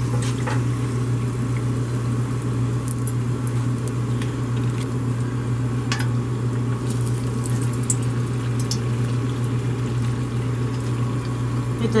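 Pancake-batter-coated Oreo frying in a pan of hot oil: steady sizzling and bubbling with scattered sharp pops and clicks, over a steady low hum.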